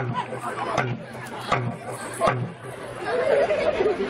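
Voices talking on a stage, over sharp thumps that come about every three-quarters of a second, four in a row, before a voice carries on alone near the end.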